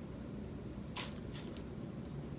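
Punch needle pushing yarn through a woven seagrass basket: two short scratchy strokes under half a second apart near the middle, the first louder, over a low steady background hum.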